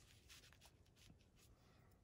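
Near silence: room tone, with a few faint, soft rustles.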